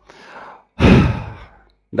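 A man breathes in quietly, then sighs audibly about a second in, close on a headset microphone. The sigh falls in pitch and fades away.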